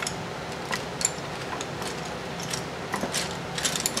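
Pens being rummaged through, with scattered small clicks and clatters of plastic pens knocking together, a few sharp taps spread across the few seconds.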